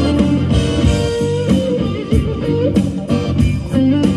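Live blues-rock band recording: electric guitar playing sustained, bending lead notes over bass and drums.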